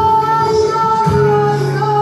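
Live flamenco singing by a male singer with flamenco guitar accompaniment; the voice holds one long note, then moves to a new note about a second in.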